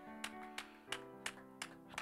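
Soft background instrumental music: held chords that change to a new chord about a second in, with a few faint clicks.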